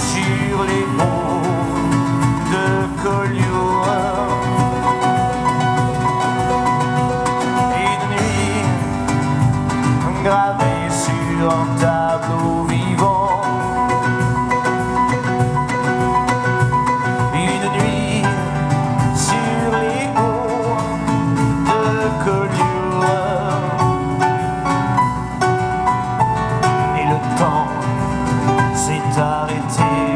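Live band playing an instrumental passage: acoustic guitar, keyboard and upright double bass over a drum kit keeping a steady beat.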